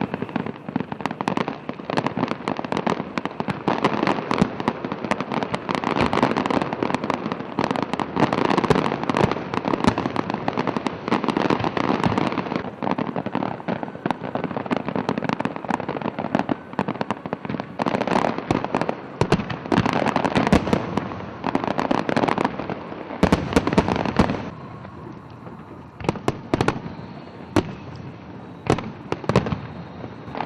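Fireworks display with rapid bangs and crackling shells going off densely, thinning to scattered bangs for the last few seconds.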